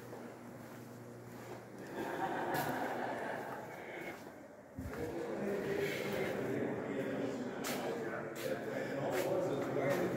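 Indistinct voices of people talking in a large hall, with footsteps and a sudden knock about five seconds in.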